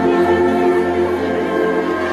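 Church brass band with sousaphones playing a hymn tune in sustained chords, the notes changing about every half second to second.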